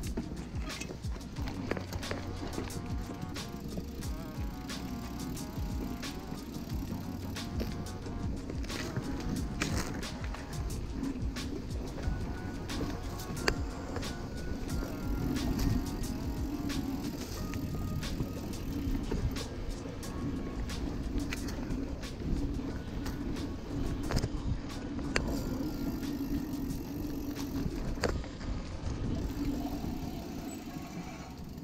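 Background music over the rattle and tyre noise of a Kona trail hardtail mountain bike riding a dirt forest trail, with frequent sharp clicks and knocks from the bike over bumps.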